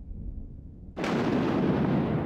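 A low rumble, then a sudden loud boom about a second in, trailing off in a long, slowly fading rumble.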